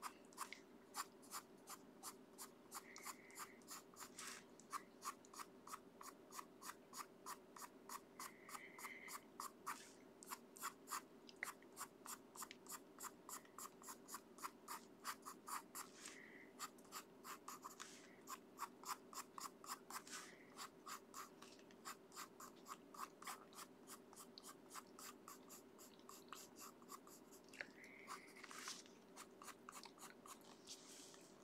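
Prismacolor Premier coloured pencil scratching on paper in quick short strokes, about three a second, with a few brief pauses. A faint steady hum sits underneath.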